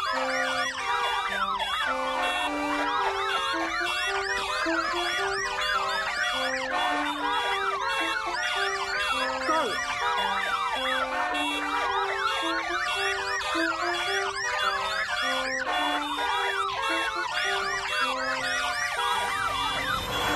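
A siren-like wail of rapid rising and falling swoops, repeating many times a second, over a cornet playing a melody of short held notes.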